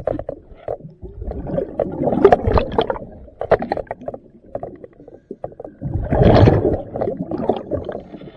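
Underwater sound of a diver cleaning a boat hull: irregular surges of bubbling and rumbling with scattered clicks and knocks, the biggest surge about six seconds in.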